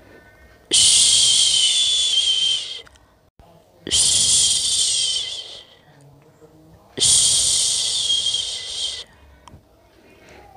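A person shushing, three long "shhh" sounds of about two seconds each with pauses of about a second between them, the shushing used to soothe a baby to sleep.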